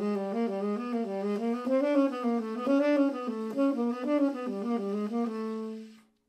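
Solo unaccompanied tenor saxophone playing a fast jazz line of chromatic and triad-based fragments in a non-repeating sequence. Near the end it settles on a held low note that cuts off abruptly.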